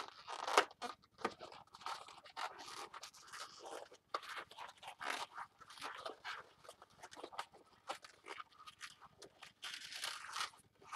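A latex twisting balloon being squeezed and twisted by hand: a busy run of short, irregular rubber-on-rubber rubs and scrapes.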